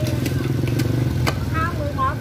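Coconut husk being torn apart by hand, with a few sharp snapping clicks as the fibres give, over a steady low engine hum.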